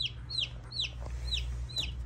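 Buff Orpington chicks, about three days old, peeping: short high peeps that fall in pitch, about three a second.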